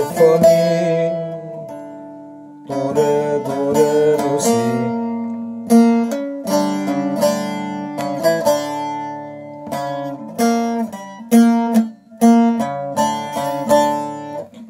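Short-neck bağlama (saz) plucked as a single-note melody in hicaz mode, each note ringing on; a held note dies away for about a second near the start before the phrase goes on.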